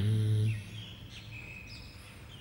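A man's long-held word ends about half a second in, then faint bird chirps sound in the background over quiet room noise.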